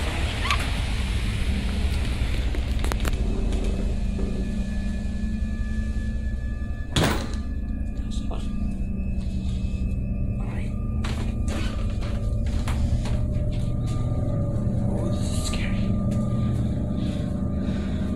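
A door shutting with one heavy thunk about seven seconds in. Under it runs a steady low rumble, and from about eight seconds on a few faint steady humming tones.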